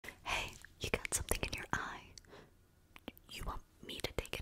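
A woman whispering close to a microphone, with sharp clicks scattered between the whispered words.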